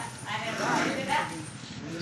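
People's voices talking, with no other sound clearly standing out.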